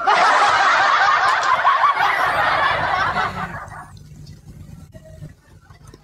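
Laughter breaks out loudly right after a joke, a dense mass of laughing that lasts about three and a half seconds and then dies away.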